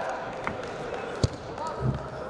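Wrestling-hall background of distant voices, with a sharp knock about a second and a quarter in and a low thump near the end.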